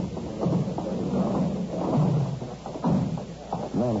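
Radio-drama sound effects of a thud like a car door shutting, over a crowd of onlookers talking indistinctly at an accident scene, all on a narrow-band old broadcast recording.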